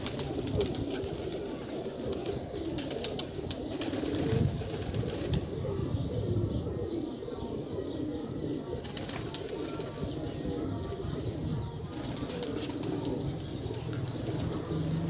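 Domestic pigeons cooing steadily, low and soft, with small clicks and rustles from handling the bird.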